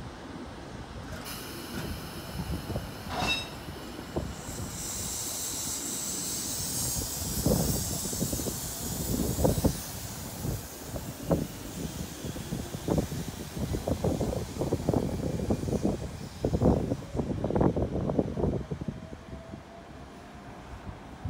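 Sydney Trains K set double-deck electric train pulling out past the platform: a high hiss from about five seconds in. Then a long run of irregular knocks and clunks from the wheels on the track as the carriages roll by.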